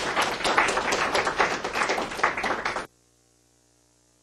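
Audience applauding: a roomful of hands clapping, cut off abruptly about three seconds in.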